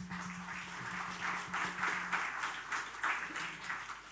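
Audience applauding: many hands clapping together, dying away near the end.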